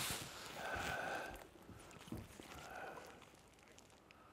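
Faint splashing of a hooked sturgeon thrashing at the surface beside the boat, with a sharp splash right at the start. It carries on unevenly for about a second and a half, then dies away.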